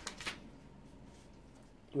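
Brief rustle of paper sheets being handled in the first moment, then a quiet room.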